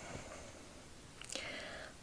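Quiet room tone, then a short, soft intake of breath about a second and a half in.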